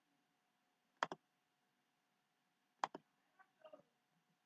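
Computer mouse button clicks: a quick double-click about a second in, another just before three seconds, then a few fainter clicks near the end.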